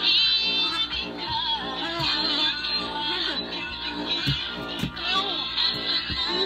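Music with a sung melody playing, with occasional beats.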